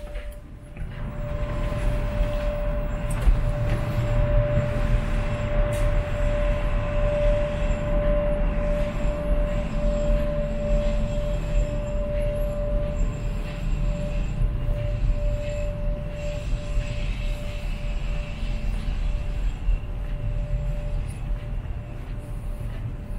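Loud steady rumble of a large ferry's machinery and ventilation on the open deck, with a constant mid-pitched whine running through it and wind buffeting the microphone. It swells up about a second in, as the doors open onto the deck.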